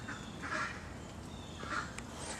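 A bird calling twice, once about half a second in and again near the end.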